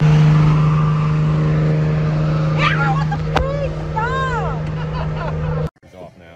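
Car cabin noise: a loud, steady engine drone over road rumble. A voice calls out in a few rising-and-falling cries around the middle, and the sound cuts off suddenly shortly before the end.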